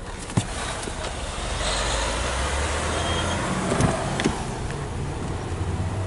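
Vehicle noise swelling and fading over a low rumble, with a few sharp clicks and knocks.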